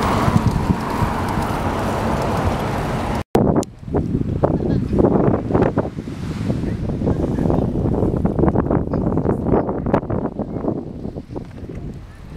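Wind buffeting the microphone of a camera on a moving bicycle, a steady rush at first, then gustier, with a split-second dropout about three seconds in.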